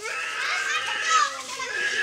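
Young children's voices: high-pitched chatter and calls.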